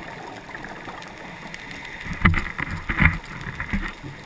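Water noise: a steady wash, then from about two seconds in a run of loud bubbling bursts.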